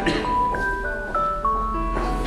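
A simple chiming melody of clear, bell-like single notes, stepping from pitch to pitch a few times a second.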